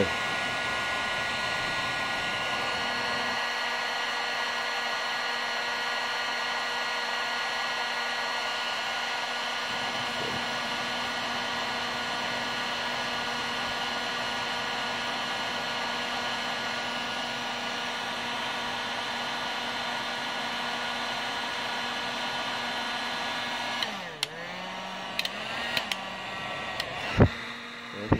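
Electric heat gun running steadily, a constant blowing hiss over a fixed motor whine, as it heats a motorcycle radiator fan thermoswitch. About 24 s in the blowing falls away and the motor hum dips in pitch, followed by a few clicks and one sharp knock near the end.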